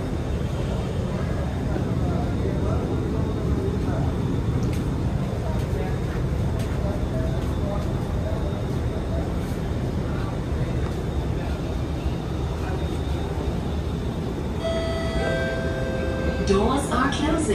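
Steady low hum inside a stationary Alstom Movia R151 metro car standing at a platform with its doors open, with faint voices in the background. Near the end a two-note electronic chime sounds, stepping down in pitch.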